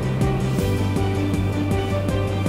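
Background music with a steady beat over sustained bass notes; the bass drops to a lower note about half a second in.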